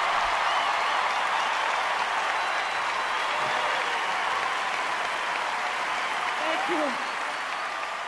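Large arena crowd applauding and cheering, with a few voices calling out above the clapping; the applause begins to die down near the end.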